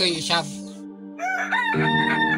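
A rooster crowing: one long, pitched crow beginning about a second in.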